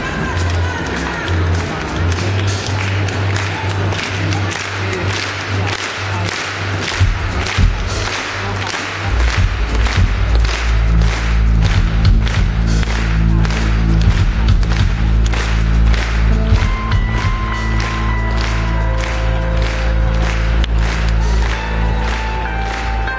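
Live pop band music from an outdoor stage, played through a large PA and heard from inside the crowd. A steady drum beat runs throughout, heavy bass notes come in about nine seconds in, and held keyboard notes join later.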